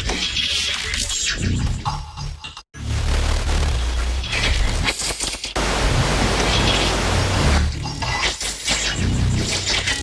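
Granular synth pad and texture from the Gladebox FL Studio Patcher instrument, layered with noise from its noise module, over a steady low bass. The sound drops out briefly just under three seconds in, and a thick wash of noise fills the middle for about two seconds.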